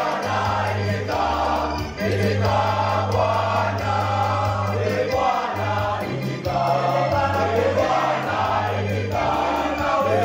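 Boys' school choir singing a Swahili hymn in parts, with long, deep bass notes held under the melody.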